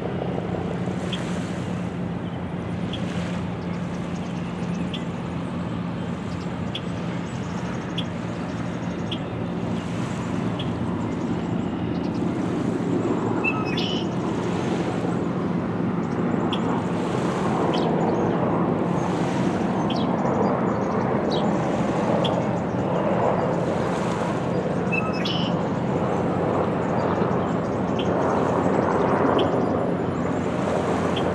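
Outdoor ambience of wind and water noise over a steady low engine hum. The noise grows louder about halfway through, with faint regular ticks about once a second.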